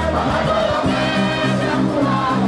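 Gospel choir singing together into microphones, amplified through a PA.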